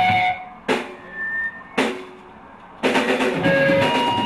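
A loud live rock band cuts out. In the gap come two sharp drum hits about a second apart, then the full band with drum kit and electric guitar comes crashing back in near three seconds in.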